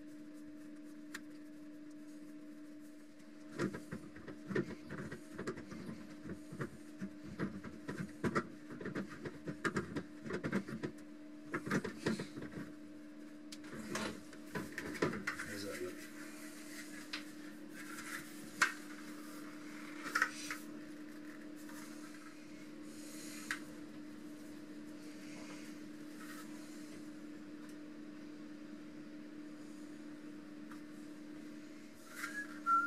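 A rigid plastic bowl being handled and shifted against a stainless-steel frame: a run of clicks, knocks and scraping rubs for about twelve seconds, then only occasional taps, over a steady low hum.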